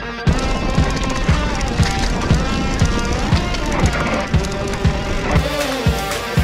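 Background music with a steady beat of about two kick-drum thumps a second under pitched instruments, the arrangement changing about five seconds in.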